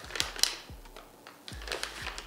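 A wet wipe being taken out of its plastic pack: a few sharp crinkles and clicks, the loudest about half a second in and another cluster near the end.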